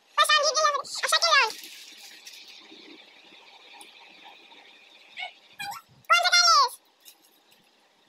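Girls' high-pitched giggling and squealing in short bursts near the start and again about six seconds in, with a faint steady hiss between.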